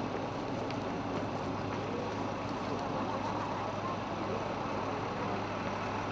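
Steady low hum of vehicle engines running, with faint voices in the background.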